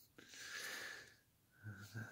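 A man's breath between sentences: one soft, noisy intake lasting under a second, followed near the end by the start of his voice.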